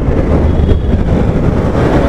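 Motorcycle riding at low speed in city traffic: a steady low rumble of the engine and wind on the microphone.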